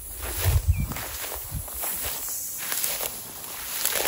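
Footsteps through dense grass and dry brush, with vegetation rustling and swishing against the walker. A few heavier thuds come about half a second in.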